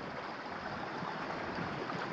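Steady rush of a shallow, clear river flowing over stones and cobbles.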